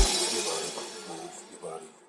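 The end of an EDM/trap remix: a final hit rings out and the reverberant tail, with faint echoing vocal fragments, fades away to silence by the end.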